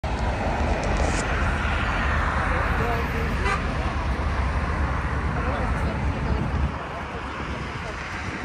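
City street ambience of road traffic passing close by, with a heavy low rumble and a hubbub of people's voices. The rumble drops away about two-thirds of the way through.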